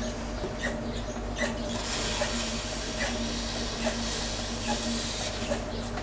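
Electric potter's wheel running with a steady hum while a wooden throwing stick is held against the base of a freshly thrown bowl, cutting in underneath it. A soft scraping hiss comes in about two seconds in and stops near the end.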